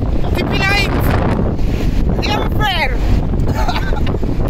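Rumble of a moving vehicle with wind buffeting the phone's microphone, while people's voices are raised twice in short, sweeping calls.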